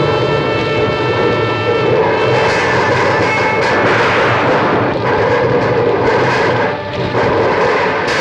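Film soundtrack storm: loud, continuous rain and wind noise with a low rumble, mixed with sustained musical chords that are held clearly during the first two seconds.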